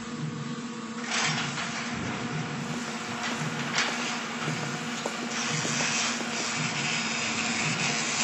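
A steady low droning hum that pulses about once a second, with a loud rushing hiss setting in about a second in and running on over it.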